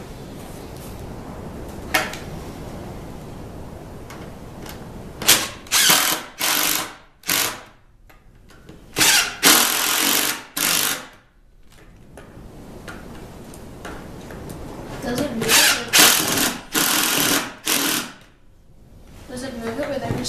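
Cordless impact driver driving screws through a plywood crosscut-sled fence into its base, in three runs of short bursts with quiet pauses between.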